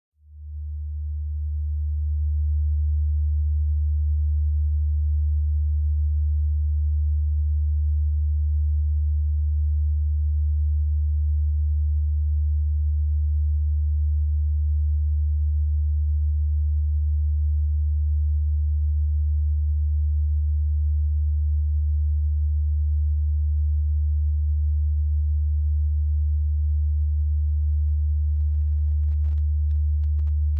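A low, steady electronic sine tone, the kind of signal that drives the laser geometry in this audiovisual performance. It swells in over the first two seconds and then holds. Faint high crackles come in near the end.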